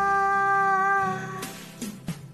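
A woman's voice holding one long sung note over a karaoke backing track, bending slightly near its end and stopping about one and a half seconds in, after which the backing music carries on more quietly.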